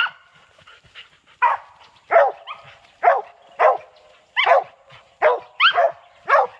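Cur dog barking at the base of a tree in short, evenly spaced chop barks, about one every half second to second. This is the steady tree bark of a cur that has treed game.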